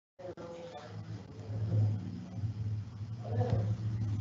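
Audio cuts in just after the start with a low steady hum that rises and falls unevenly in level, with faint voice sounds under it early on and again a little past three seconds.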